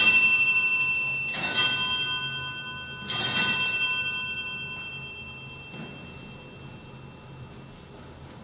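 Wall-mounted three-bell sacristy bell rung by its pull cord, three rings in the first three seconds, each one ringing on and dying away slowly. It signals the priest's entrance at the start of Mass.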